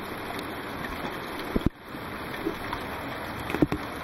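Steady hiss of heavy rain, with a couple of brief knocks and rubbing from a hand wiping the camera lens, about halfway through and near the end.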